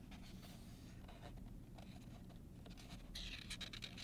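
Faint rustle of a picture-book page being taken by its corner and turned by hand: a short run of paper crinkles starting about three seconds in, over quiet room tone.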